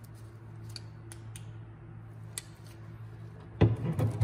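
Handling of a hollow plastic toy truck body: a few light ticks and taps, then a loud knock near the end as the body is gripped and moved, over a steady low hum.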